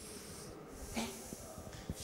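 A woman asleep, snoring faintly.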